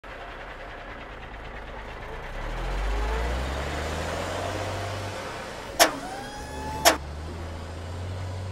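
Animation sound effects of a small engine for a cartoon forklift: a low steady hum that swells a few seconds in, then two sharp clicks about a second apart with a faint rising tone between them, and the engine hum returns.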